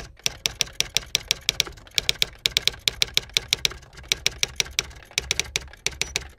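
Typewriter sound effect: a rapid, uneven run of key-strike clicks with a few short pauses.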